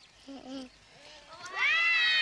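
A long, loud meow that starts about one and a half seconds in, rising in pitch and then slowly falling, after a brief low voiced sound.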